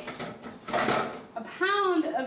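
A short, noisy burst of kitchen handling just under a second in, a bowl picked up from the counter, followed by a woman speaking near the end.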